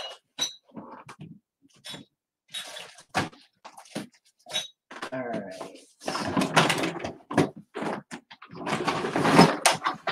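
Rustling and clattering of objects being handled in a plastic bin. Short knocks and scrapes come throughout, with indistinct voice-like sounds in the second half.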